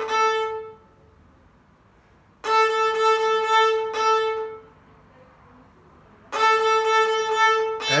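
Violin bowed on the open A string, playing a four-sixteenths-and-two-eighths rhythm (ti-ri-ti-ri-ti-ti) on one repeated note. One phrase ends just under a second in, a full phrase plays about two and a half seconds in, and another begins just past six seconds, with nearly two-second rests between them.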